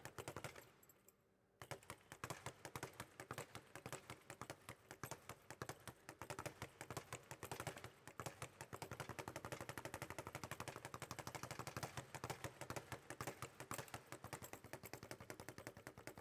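Speed bag rattling rapidly against its rebound platform under a continuous stream of punches, a fast, even drumming of many hits a second. It breaks off briefly about a second in, then runs on steadily.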